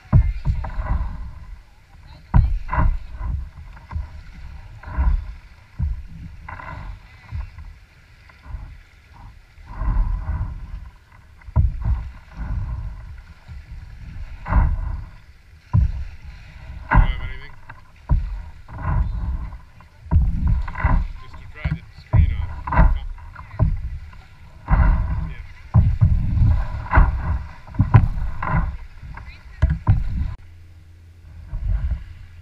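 Small lake waves washing against a kayak's hull and over a pebble shore, in irregular surges every second or two.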